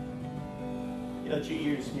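Acoustic guitar with a chord ringing out and held, and a voice coming in over it near the end.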